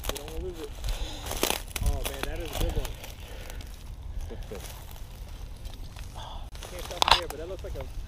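Dry reeds rustling and crackling close to the microphone, with a sharp crackle about a second and a half in and another near the end, over a low wind rumble and soft murmured voices.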